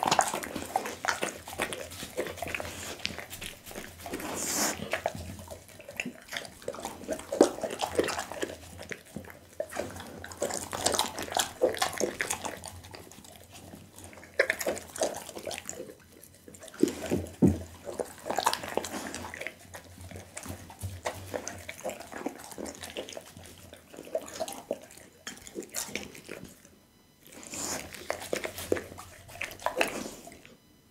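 Pit bull chewing and swallowing boiled loach close to the microphone: irregular wet smacking and chomping, coming in bursts with short pauses. Licking near the end.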